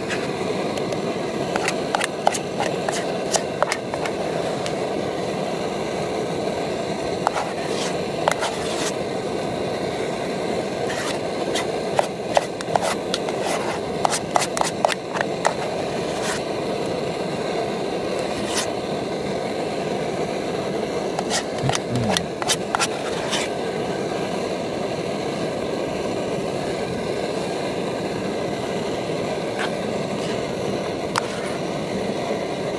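Light scraping and clicking of utensils and food against a metal camping pot, in scattered clusters through the first two-thirds, over a steady rushing background noise.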